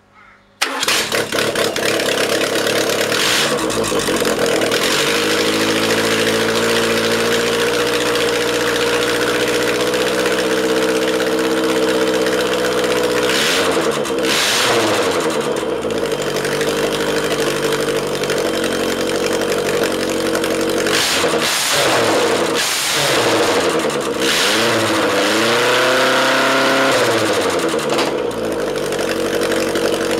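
Ford OHC 'Pinto' 2.0-litre four-cylinder engine on a test stand starting up: it catches at once about half a second in and settles to a steady run. Later it is blipped several times, the pitch rising and falling with each rev.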